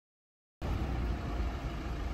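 Silence for about half a second, then a car engine's steady low rumble comes in suddenly.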